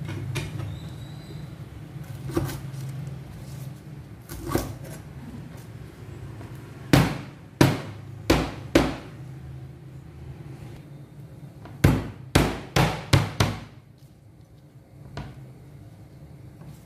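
Lemongrass stalks being bruised with a cleaver on a plastic cutting board: sharp, loud whacks, four about seven to nine seconds in and five more in quick succession around twelve to thirteen seconds, with a few softer knocks before them.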